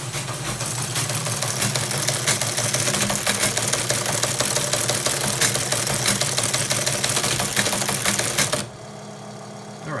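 Teletype Model 15 printing the CP/M sign-on message: a fast, continuous mechanical clatter of its typing and carriage mechanism over the hum of its running motor. The clatter stops sharply near the end, leaving the motor hum.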